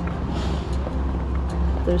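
Steady low rumble of outdoor background noise, with a woman's voice starting just at the end.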